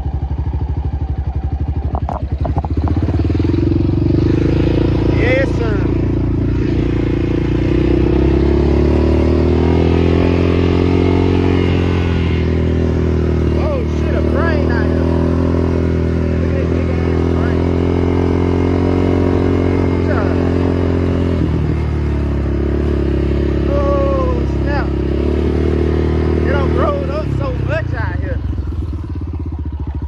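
ATV (four-wheeler) engine running steadily under light throttle while being ridden, its note wavering as the throttle changes and dropping briefly about two-thirds of the way through before picking up again.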